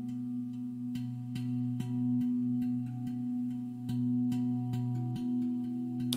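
Soft ambient meditation background music: a low, steady drone of held tones that shift in pitch now and then, with faint scattered clicks.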